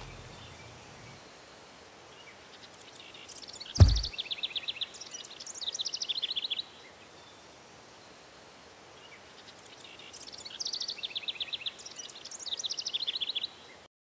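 Quiet outdoor ambience with a songbird singing two bouts of rapid high trills, one about four seconds in and one near the end. A single sharp knock comes just before the first bout.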